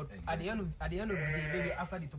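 A sheep bleating once, a single wavering bleat of nearly a second starting about a second in.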